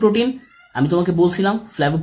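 A man's voice speaking in drawn-out, pitched syllables.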